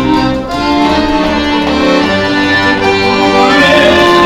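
Live instrumental music: held, sustained chords that change about once a second, over a low bass.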